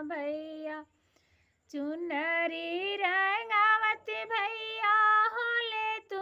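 A woman singing solo without accompaniment: a Bhojpuri folk song of the imli ghotai (tamarind-grinding) wedding ritual. She breaks off for a breath about a second in, then carries on in long held phrases.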